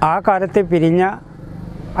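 A man speaking Malayalam close to a lapel microphone. The speech stops about a second in, leaving a steady low background noise.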